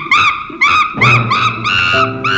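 Chimpanzee sound effect: a quick series of short hooting calls, about four a second, climbing in pitch toward screams.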